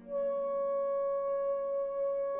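Contemporary orchestral music: a single high woodwind note that enters at the start and is held steady.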